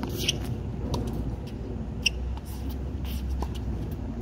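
Tennis ball being struck by rackets and bouncing on a hard court during a baseline rally: a few sharp pops about a second apart, the loudest about two seconds in, over a steady low rumble.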